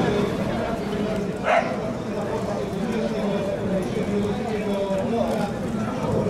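Many people talking at once, with one short sharp cry about one and a half seconds in.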